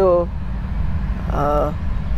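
Steady low outdoor rumble under the voices. A spoken word trails off at the start, and a short voiced sound from a person comes about one and a half seconds in.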